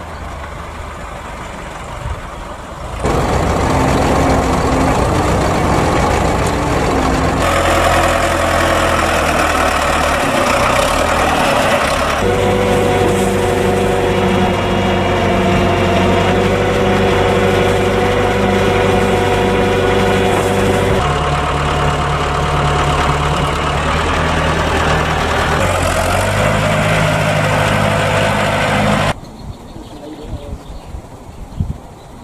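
Diesel tractor engines running steadily, the sound changing abruptly at several cuts between machines. It is quieter for the first few seconds, then louder, with steady humming tones from the engines and driven machinery.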